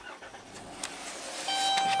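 A Pentastar 3.6 V6 in a 2016 Dodge Grand Caravan starting up. About one and a half seconds in, the level rises as it catches, and the dashboard warning chime starts dinging. The engine is setting a P0018 cam-crank correlation code, with the bank 2 exhaust cam reading about 22 degrees off, yet it runs fairly smoothly.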